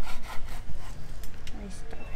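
Kitchen knife sawing through a dried salted fish on a wooden cutting board, in a series of scraping strokes.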